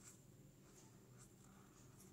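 Faint scratching of a marker tip on ruled notebook paper as letters are written, in several short strokes.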